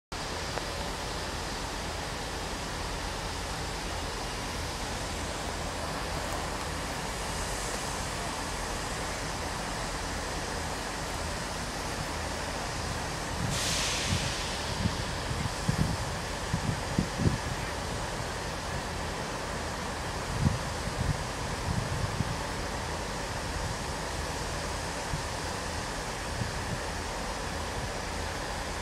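Steady hum of a class 221 Voyager diesel-electric multiple unit idling at a distance, with a short burst of hissing air about 13 seconds in and scattered low thumps of wind on the microphone over the following several seconds.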